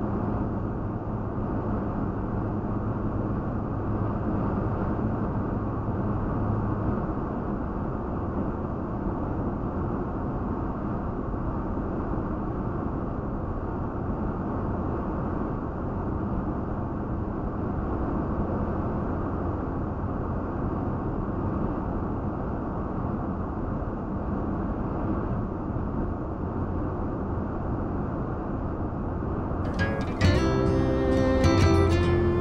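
Steady road and engine noise inside a Toyota Tacoma pickup's cabin while driving, recorded by a dashcam. The low engine drone shifts about seven seconds in.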